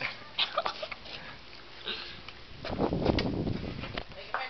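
A dog sniffing close to the microphone in short, quick sniffs, followed about two and a half seconds in by a louder, rumbling rustle lasting about a second.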